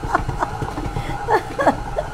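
Soft chuckling laughter from a woman, in short breathy bits, over a low steady background hum.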